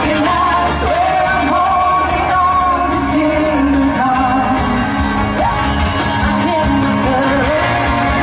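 Live pop song: a woman singing the lead melody over a band with electric guitar and keyboards.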